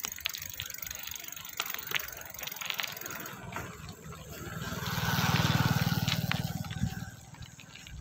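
Bicycle rolling over a rough dirt road, tyres crunching with scattered clicks and rattles from the bike. About halfway through a motorcycle engine passes close by, growing loud and then fading away.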